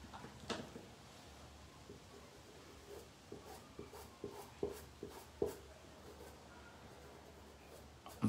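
Faint sound of a paintbrush working fabric paint onto cloth: soft scratchy strokes and a run of light taps, about two or three a second, in the middle of the stretch.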